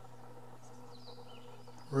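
Faint outdoor ambience under a steady low hum, with a few faint, short, high bird chirps in the first half.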